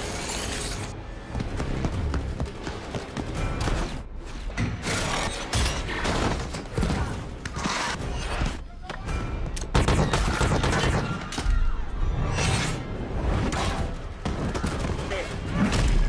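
Action-film fight sound mix: score music runs under a dense string of blows, thuds and crashes, with the heaviest hits in the second half.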